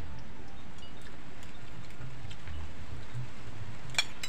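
Metal spoons clinking lightly against ceramic plates a few times as food is scooped up, the sharpest clink at the very end, over a steady background hiss.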